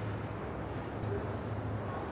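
Room tone of a large hall: a steady low hum under an even background hiss.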